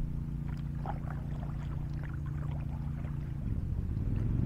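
Kayak paddle dipping and stroking through the water, with light splashes and drips, over a steady low hum.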